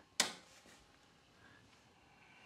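The power switch of a DEC VAX 4000 Model 200 being flipped on: one sharp click about a fifth of a second in, switching the machine on.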